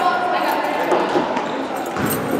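Basketball bouncing on a hardwood gym floor, with a few sharp knocks, under overlapping voices of players and spectators echoing in the gymnasium.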